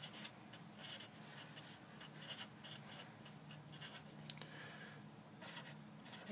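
Sharpie marker writing on paper: a faint, irregular run of short pen strokes as an equation is written out by hand.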